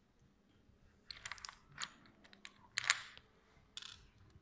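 Cuisenaire rods clicking and tapping against each other and the tabletop as they are laid out: a run of light clicks a little after a second in, more around two seconds, and the loudest near three seconds.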